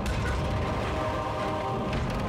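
Cartoon sound effect of a heavy wooden cart rolling on its spoked wheels: a steady, even rumble.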